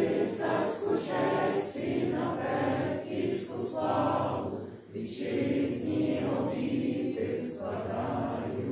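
A group of people singing together.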